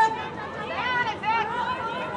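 Several raised, high-pitched voices calling out and chattering over one another, loudest right at the start.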